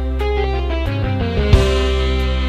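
Live dangdut band music: a quick run of single notes over a held bass note, then a loud accented chord about one and a half seconds in that rings on.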